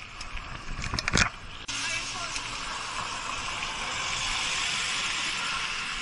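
A few knocks of a hand bumping the bike-mounted camera, then a steady rush of wind and road noise from riding a bicycle along a road with passing traffic.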